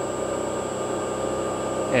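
5-horsepower three-phase motors running steadily at 65 Hz on a variable frequency drive, a steady electrical hum with a thin high-pitched whine over it.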